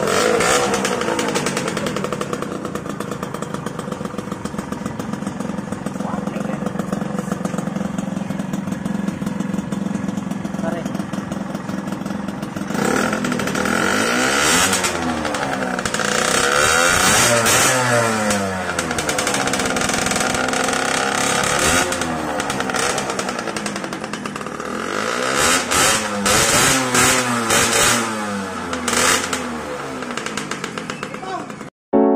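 Yamaha YSR two-stroke single on an RF Pipe aftermarket expansion-chamber exhaust, idling steadily for about thirteen seconds, then revved again and again, the pitch climbing and falling with each rev. Near the end comes a run of short, quick throttle blips.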